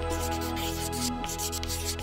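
Soft background music holding a steady chord, overlaid by a scratchy, hissing rubbing sound effect in a series of short strokes, like a pen writing on paper.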